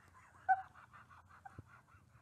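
A woman's stifled laughter behind her hand: quiet, breathy, wheezing pulses with a short high squeak about half a second in.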